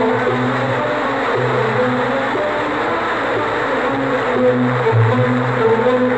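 A large audience applauding, a dense even clatter of clapping over an Arabic orchestra that keeps playing low notes underneath. The applause swells about half a second in and eases near the end as the melody comes back up.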